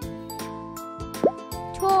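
Children's background music with steady tones and a regular beat. About a second in, a short rising 'bloop' sound effect.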